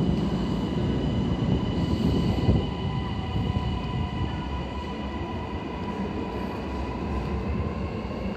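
Kintetsu 80000 series "Hinotori" limited express train pulling out and running away along the platform: a low rumble with steady whining tones above it, growing somewhat quieter after about two and a half seconds as it draws off.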